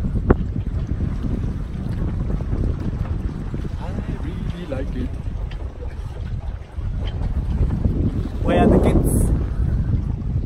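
Wind buffeting the microphone in a steady low rumble aboard a sailboat under way. A voice cuts in briefly near the end.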